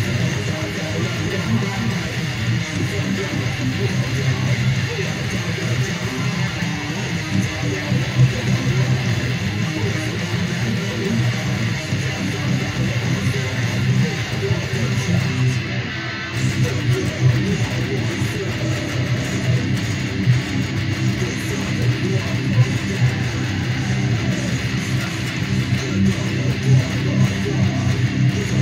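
Electric guitar playing metalcore riffs along with the song's full-band backing music, with a brief break in the sound about halfway through.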